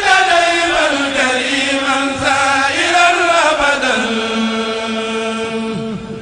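Chanted Arabic religious poem (a qasida, Qaça'id declamation) sung as one long drawn-out phrase. Its pitch wavers and slides slowly downward, then holds on one note for the last couple of seconds.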